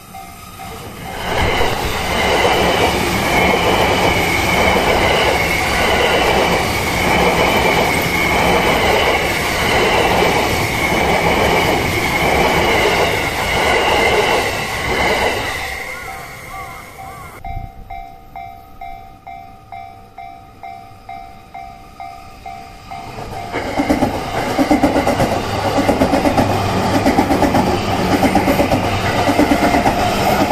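Japanese level-crossing warning bell ringing in a steady repeating clang while E235 series Yamanote Line electric trains pass. One train goes by through the first half with its wheels clattering in a steady rhythm. The bell is heard alone for a few seconds, then a second train runs in from about three-quarters of the way through.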